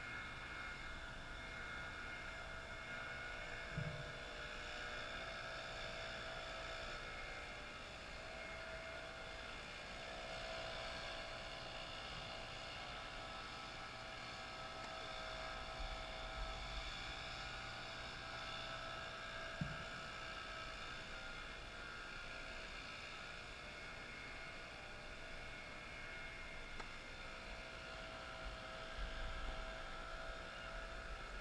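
A steady, constant whirring hum, with two faint short knocks, one about 4 seconds in and one about two-thirds of the way through.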